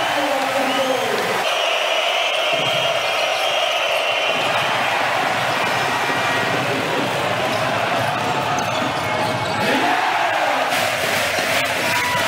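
Basketball game sound in a packed arena: a steady crowd din with the ball bouncing on the court. The sound changes abruptly about a second and a half in and again near the end, where one clip of play cuts to the next.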